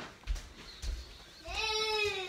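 A few dull low thumps, then about a second and a half in a drawn-out pitched vocal sound from a person begins. It rises briefly and then slides slowly down.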